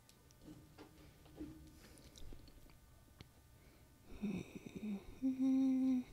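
A woman humming: a few short broken hums about four seconds in, then one steady note held near the end.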